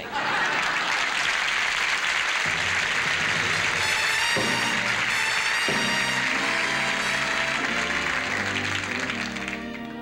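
Studio audience applauding, with an orchestra playing an introduction under it. Held chords come in a couple of seconds in, and the applause dies away near the end, leaving the music.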